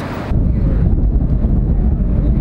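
Wind buffeting the microphone: a loud, low, uneven rumble with little high sound in it, setting in about a third of a second in.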